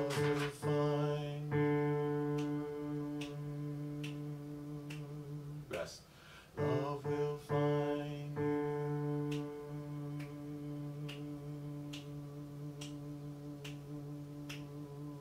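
Electronic keyboard playing long sustained chords under a man's voice singing a slow held choral tenor line. The chords change a few times near the start and again a few seconds later, then hold. A steady click sounds about once a second throughout.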